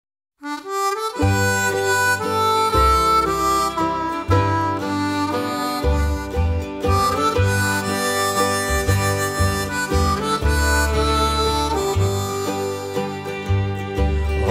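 Harmonica playing the melody of an instrumental introduction over a backing band with a low bass line; the music starts about half a second in.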